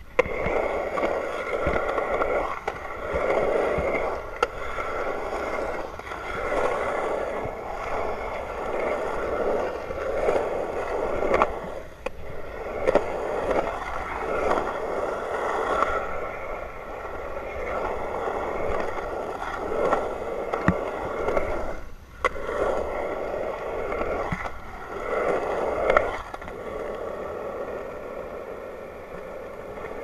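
Skateboard wheels rolling over concrete skatepark surfaces: a continuous rumbling roar that swells and eases as the board carves through bowls and transitions. A few sharp clacks of the board come through, and the roll drops away briefly twice.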